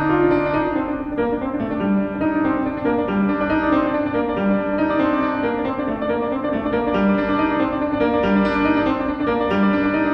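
Solo classical piano played on a Schimmel grand piano: dense, sustained chords and running notes over a low bass note that recurs about once a second.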